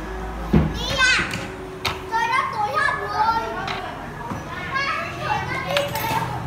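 Children's high voices talking and calling out, with a few sharp clicks among them.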